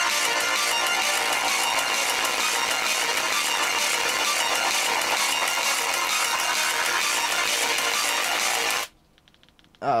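A song with vocals and guitar played loud through a single bare Vifa dome tweeter from a Paradigm speaker, driven hard: thin and bass-less, with almost nothing below the midrange. It cuts off suddenly about nine seconds in.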